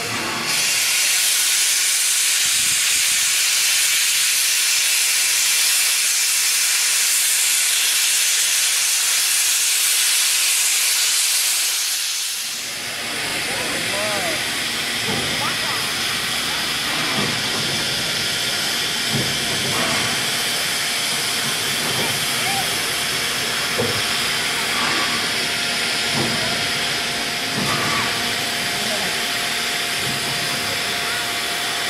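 A Victorian Railways R class steam locomotive venting steam: a loud, steady hiss that stops suddenly about twelve seconds in. A softer hiss of steam carries on after it, with faint voices.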